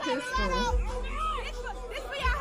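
A woman's voice over music with a deep bass beat.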